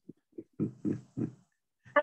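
A man laughing: about five short chuckles that fade out about a second and a half in.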